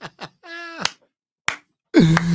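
A man laughing hard: a few quick breathy bursts, then a high-pitched squeal held for about half a second that drops off at the end. Two short clicks follow, then silence.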